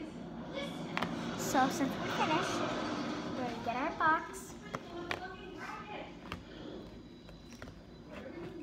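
Indistinct voices that the speech recogniser caught no words from, loudest around the second and fourth seconds, with scattered light taps and clicks of craft things handled on a table.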